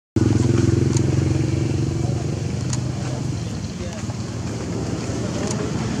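An engine running, with a steady low drone that is loudest in the first two seconds and then eases off into a softer hum.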